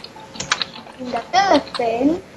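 A few computer keyboard clicks about half a second in, then a child's voice making short wordless 'mm' sounds, heard over a video call.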